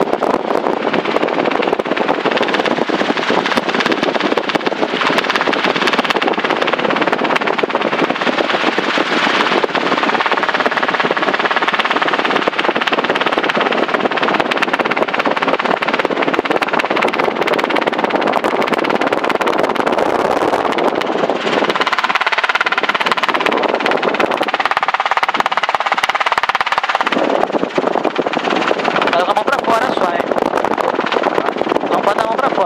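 Loud, steady helicopter engine and rotor noise heard inside the cabin of a small Robinson helicopter in cruise flight.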